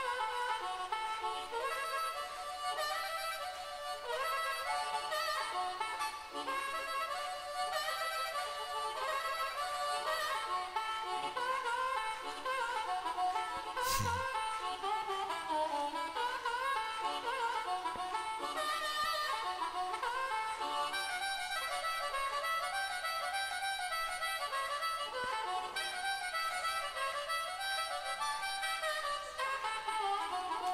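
Harmonica played into a cupped hand-held microphone in a live performance: a long solo intro of quick, darting melodic runs, with little or no bass under it. A single brief click sounds near the middle.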